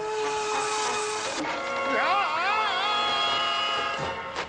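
Cartoon sound effects: a loud hissing whoosh lasting about a second and a half as the Big Dipper machine sucks the water dry, then a wavering, warbling whistle-like tone from about two seconds in.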